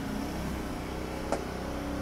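A steady low mechanical hum, like an idling engine or running machinery, with a single light click a little past the middle.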